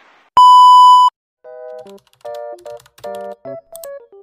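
A single loud electronic beep, one steady tone held for under a second, followed by a light jingle of short synthesized notes in quick succession.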